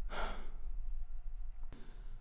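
A man's breathy sigh, one short exhale in the first half second, followed by a faint click near the end.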